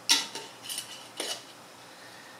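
A glass herb jar and its lid being handled: a sharp clink near the start, then three lighter clinks over the next second, one with a brief glassy ring.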